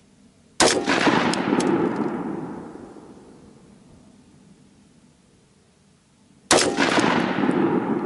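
Two AR-15 rifle shots of PPU M193 55-grain ammunition, about six seconds apart, each followed by a long echo fading over two to three seconds. The rifle is being test-fired with its Superlative Arms adjustable gas block turned well down to cure over-gassing; the ejection is judged considerably better.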